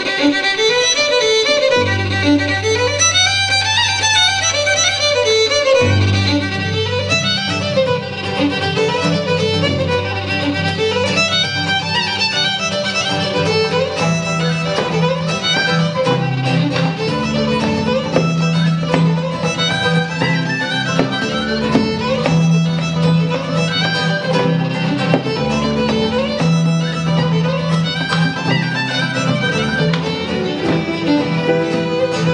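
Fiddle playing a fast instrumental tune with a bluegrass string band's accompaniment, its quick runs over a bass line that changes note every second or two.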